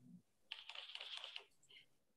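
Faint, rapid typing on a computer keyboard: a quick run of keystrokes lasting about a second, starting about half a second in.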